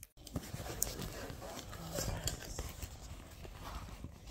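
Rustling and irregular light knocks from a handheld phone being moved about, with faint voices in the background.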